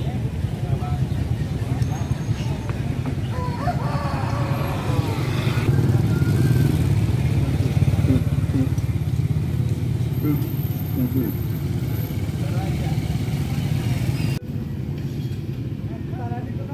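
Busy market street ambience: small motorcycle engines running and riding past, with people talking in the background. The sound cuts abruptly to quieter surroundings a second and a half before the end.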